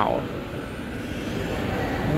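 Steady, even background rumble and hiss of a shopping mall's interior, with the last syllable of a voice right at the start.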